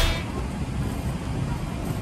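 Music cuts off at the start, leaving the low, steady rumble of a parking garage's background noise.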